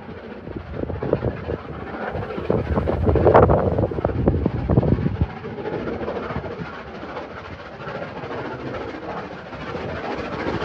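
Steam-hauled train running on the railway across the viaduct, heard from a distance; the sound swells about three seconds in, then settles.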